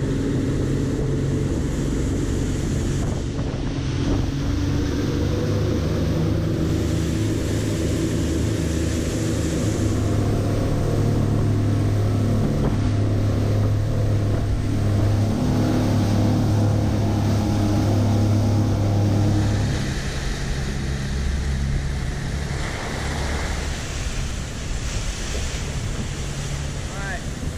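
Three Suzuki outboard motors running at speed, a steady engine tone under the rush of wake water and wind on the microphone. About twenty seconds in the engine tone drops back, leaving mostly wind and water noise.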